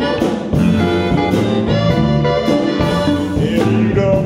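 A live blues band playing, with electric bass and drums under a held lead melody line.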